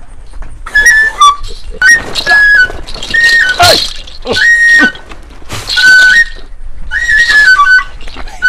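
A flute playing short repeated phrases of two or three held notes, about one phrase a second, with breathy noise and scattered sharp knocks around them.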